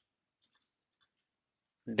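A few faint computer-keyboard keystrokes as a short word is typed, with a man's voice starting right at the end.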